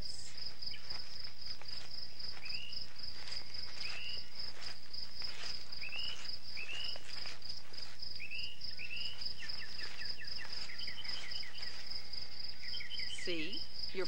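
Crickets shrilling in a steady high tone, with a bird giving short chirps about once a second and a fast trill about ten seconds in.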